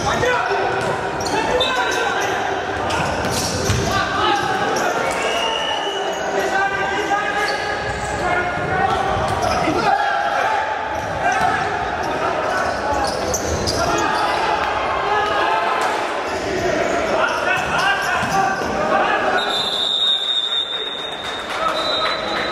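A futsal ball being kicked and bouncing on a hard court floor amid players' shouts in a large sports hall. Near the end a long, high, steady whistle sounds.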